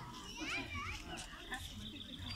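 Faint chatter and calls from a crowd of children, with a couple of light clicks.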